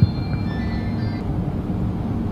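Steady low background rumble of room noise in a hall, with a few faint high tones in the first second.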